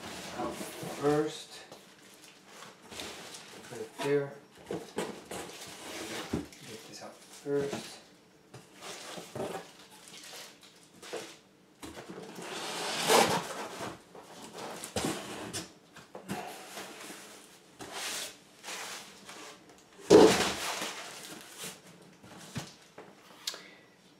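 A cardboard shipping box being opened and unpacked by hand: cardboard flaps and plastic wrapping rustle and scrape in short irregular bursts, with the loudest handling noises about 13 and 20 seconds in as the contents are lifted out and set on the table.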